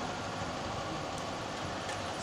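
Steady room noise of a hall with no clear voice or distinct event, in a lull between phrases of a man's chanting.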